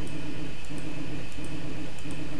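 Steady low hum with a few faint ticks from the Kossel Mini delta 3D printer's stepper motors, lowering the nozzle toward the bed.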